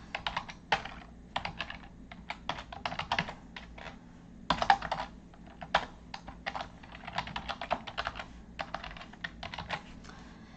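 Typing on a computer keyboard: quick, irregular keystroke clicks in runs, with a short pause about four seconds in.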